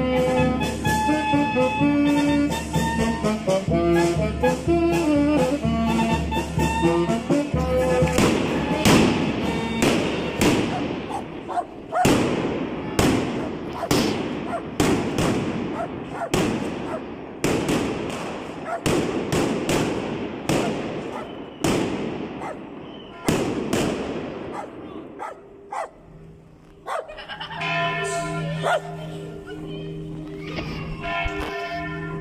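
Street band of brass and clarinets playing a march, cut off after several seconds by a long, irregular string of loud firecracker bangs that goes on for over a quarter of a minute. The band is heard again near the end.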